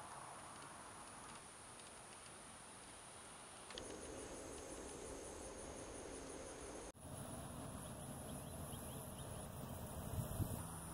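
Faint, steady high-pitched insect trilling over a quiet outdoor background, which shifts abruptly about four and seven seconds in.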